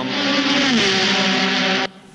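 A race-car engine on the soundtrack of a projected video clip, heard through the hall's loudspeakers. Its pitch drops as the car slows, and the sound cuts off abruptly near the end.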